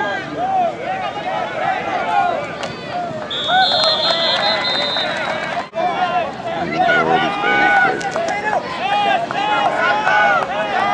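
Many voices of spectators and sideline players shouting and calling over each other at a high school football game. About three seconds in, a steady high whistle blast lasts about a second and a half, typical of a referee's whistle ending the play.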